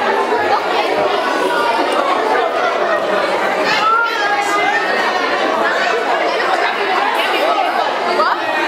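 Crowd of children and adults chattering, many voices overlapping in a steady hubbub.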